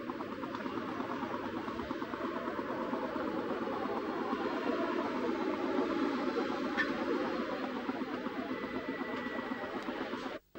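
Steady rushing background noise, a little louder in the middle, with no distinct events.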